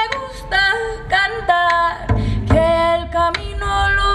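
A woman singing a melody live in long, bending held notes, accompanied by a hand-played frame drum giving low thuds and sharper strikes.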